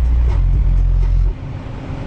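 Cabin noise of a 2007 BMW 328xi at highway speed: the inline-six engine and road noise make a deep, steady rumble, which drops suddenly a little past halfway through.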